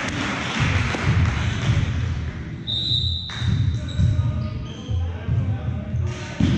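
A referee's whistle blown once in a short blast about three seconds in, over crowd noise and repeated low thuds from the gym floor.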